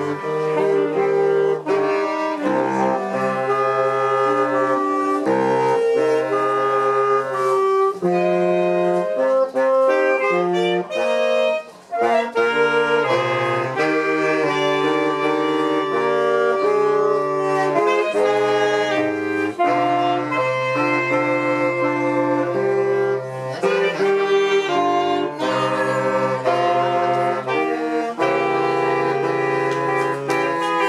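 Saxophone quartet, including a baritone saxophone on the bass line, playing a piece in close harmony with sustained chords. The music breaks off briefly about twelve seconds in, then carries on.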